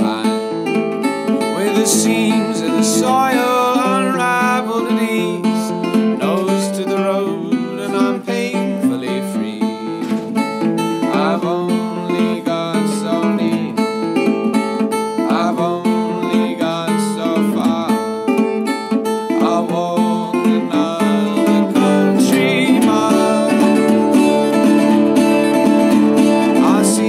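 Resonator guitar played steadily through an instrumental stretch of the song.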